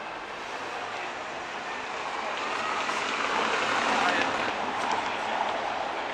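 Street traffic noise from cars on a cobbled city street: a steady hiss of passing vehicles that swells to its loudest about four seconds in, then eases off.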